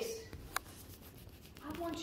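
A woman's speech pausing between phrases, with one sharp click about half a second into the pause; she starts speaking again near the end.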